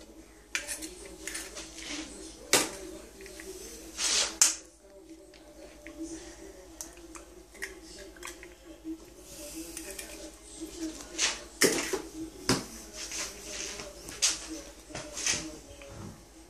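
A fork and a spatula clicking and scraping against a non-stick frying pan as fried eggs are tended, with a handful of sharp clicks spread through, over a faint steady hum.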